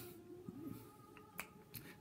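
Near silence in a studio, broken by a few faint, sharp clicks in the second half.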